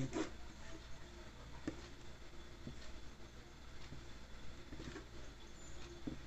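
Faint scraping of a metal spoon working soft cake batter out of a bowl into a cake pan, with a few light clicks of the spoon against the bowl.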